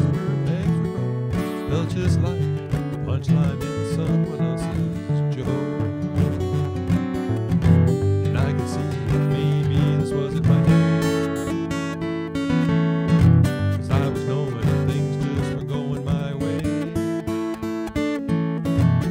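Acoustic guitar strummed through an instrumental break between verses of a song, with no singing.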